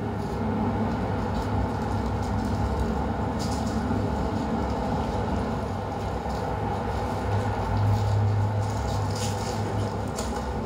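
A steady low rumbling drone from a recorded soundscape played over a lecture hall's speakers, with a few faint brief crackles now and then.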